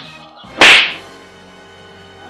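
A single loud slap, a sudden smack about half a second in that dies away quickly, over faint steady background music.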